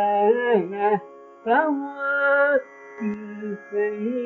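A man singing a Carnatic kriti in raga Kedaragowla, sustaining vowel notes with gliding, oscillating ornaments, in phrases broken by short breaths, over a faint steady drone.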